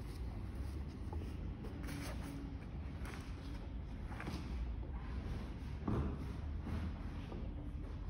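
Faint footsteps and a few light knocks, the strongest about six seconds in, over a steady low hum of room noise.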